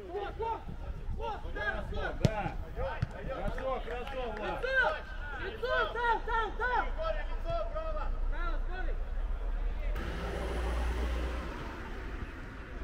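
Footballers shouting and calling to one another across a pitch during a training match, several voices overlapping. A single sharp knock about two seconds in, and a rush of noise near the end.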